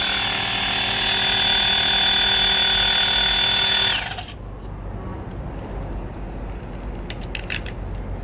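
Xiaomi handheld electric air pump's piston compressor running steadily with a high whine, working without its E8 sensor error after a replacement pressure sensor was fitted. The motor stops about four seconds in, winding down briefly, and a few light clicks of handling follow.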